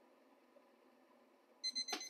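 Digital probe thermometer's alarm starting to beep rapidly and high-pitched near the end, after near silence: the boiling water has reached the 210°F set temperature.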